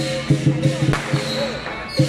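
Lion dance drum beaten in a fast, driving rhythm, about six to eight strokes a second, with cymbals and gong clashing along.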